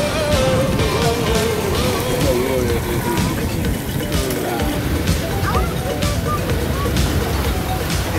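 A voice singing a slow, wavering drawn-out line over the steady low running of twin Suzuki 140 outboard motors under way.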